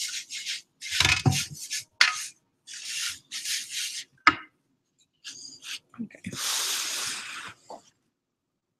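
A brush scrubbing and stirring watercolor paint in a plastic tray: a run of short rubbing strokes, then a longer steady hiss near the end.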